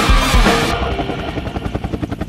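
Rock music with drums cuts off under a second in, giving way to the rapid, even chop of a helicopter's rotor blades.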